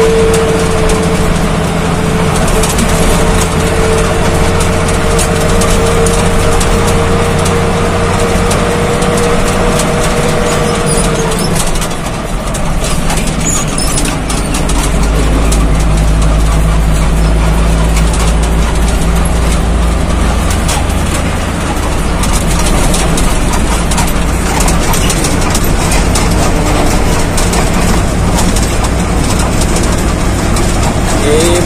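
Truck engine running and cab noise while driving, heard from inside the cab. A steady whine sounds over it for the first ten seconds or so and then stops, and the low engine rumble grows heavier from about fourteen seconds in.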